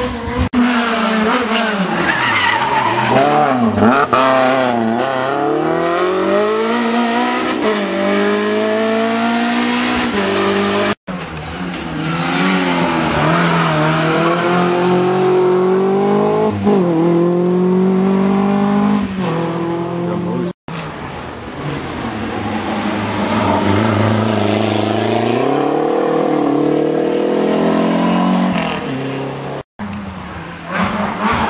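Rally car engines at hard throttle through corners, the pitch rising and falling again and again with revving, lifts and gear changes. Two abrupt cuts split the sound into three separate passes.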